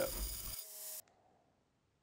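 Belt grinder grinding a brass knife guard, a hiss that cuts off suddenly about a second in and leaves near silence.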